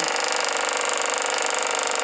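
Compressed-air Z-motor of a free-flight model running steadily, a fast even mechanical chatter with its pusher propeller spinning. The run is beginning to taper off as the air bottle's pressure falls.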